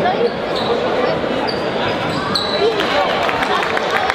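Basketball bouncing on a hardwood gym floor amid crowd chatter in a large hall, with a few short sneaker squeaks on the court.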